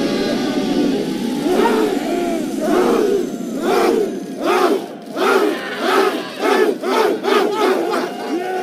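A group of young men shouting together, at first loosely and then in short unison shouts that come faster toward the end, as a player swings a large wooden trophy axe at a goalpost.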